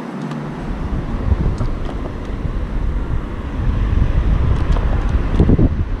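Wind buffeting the microphone of a camera mounted on a moving electric scooter: a low rumble that starts about half a second in and grows stronger in the second half.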